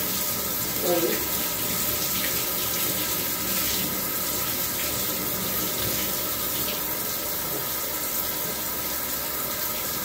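Bath water running steadily from the tap into a tub, a constant rushing hiss, with a brief vocal sound about a second in.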